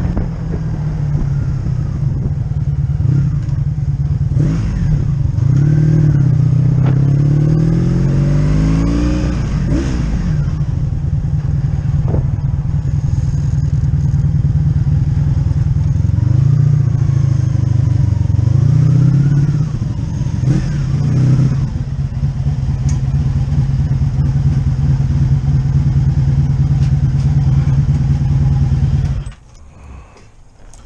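1985 Honda V65 Sabre's 1100cc V4 engine running under way, its revs rising and falling, then idling steadily before it is switched off suddenly near the end.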